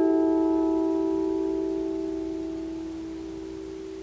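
Lyre (Leier) strings ringing on from a chord plucked just before, several notes held together and slowly fading away with no new pluck.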